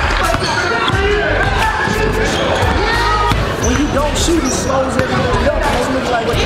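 Basketballs bouncing on a hardwood gym floor during a full-court scrimmage, with players' voices calling out.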